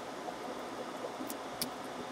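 Steady low hiss with two faint small clicks, a little over a second in and again just after. The clicks come from fingers working the plastic retaining clip of a laptop's LCD ribbon-cable connector.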